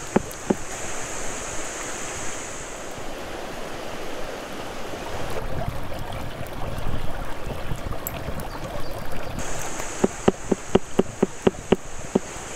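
A steady rush of flowing stream water, with a high insect drone at the start and again near the end. A couple of sharp knife taps on a wooden cutting board come at the start, and a quick run of knife chops on the board, about five a second, fills the last two seconds.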